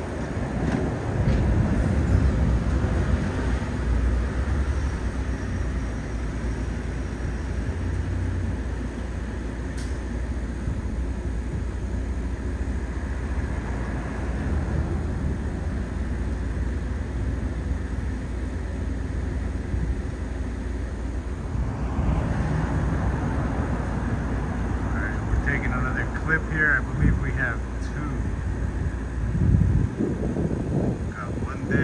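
Steady low rumble of outdoor city background noise, like distant traffic, growing a little fuller in the last third.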